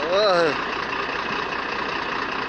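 A man's short exclamation, rising then falling in pitch, right at the start, over a steady rushing background noise that runs on unchanged.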